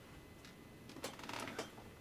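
Craft knife blade cutting into a card collagraph plate along a drawn line: a faint scratchy cut about a second in, lasting about half a second, after a lighter scrape just before.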